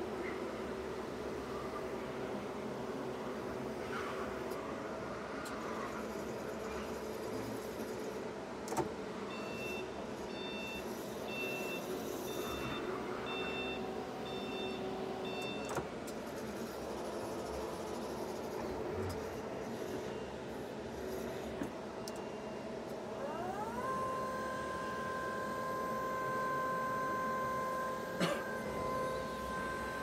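Lift Hero CPD30 lithium-ion electric forklift at work. Its electric motors whine steadily as it drives, and a run of about seven short alarm beeps comes around the middle. Near the end the hydraulic pump motor's whine rises in pitch and then holds steady as the mast raises the forks, with a few sharp clicks along the way.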